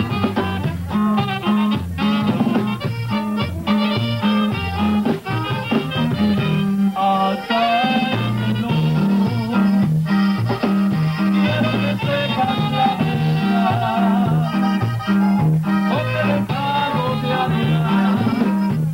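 Live Mexican regional band playing a dance tune, with saxophone over a steady bass that alternates between two low notes.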